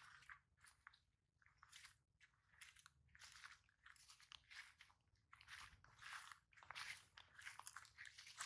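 Faint, irregular soft crunching and rustling of someone walking across grass while holding a towel-wrapped bundle: footsteps and cloth handling noise.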